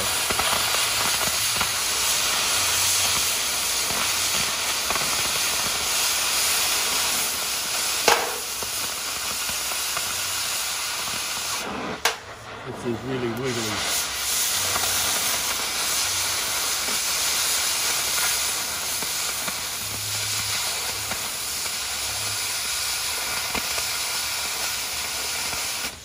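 Oxy-acetylene cutting torch hissing steadily as its flame and oxygen jet burn through steel plate, with one sharp pop about eight seconds in and a brief break in the hiss around twelve seconds.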